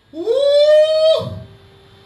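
A woman shouts a loud "Woo!" into a microphone. Her voice slides up in pitch, is held for about a second, and breaks off.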